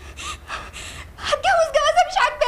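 A woman's gasping, sobbing breaths, several short breathy intakes, then her voice comes back in a little past halfway.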